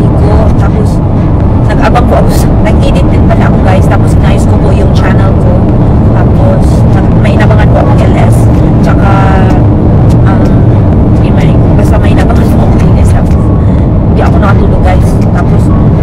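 Steady low road and engine rumble inside a car's cabin at highway speed, with a woman talking over it in places.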